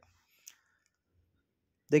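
Near silence, with one faint, short click about half a second in.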